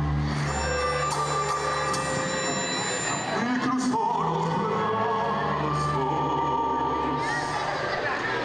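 A live symphony orchestra, strings prominent, playing with a man's voice over it through a microphone, with long held notes.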